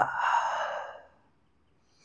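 A man's long, breathy sigh, a relaxed exhale that starts suddenly and fades out within about a second.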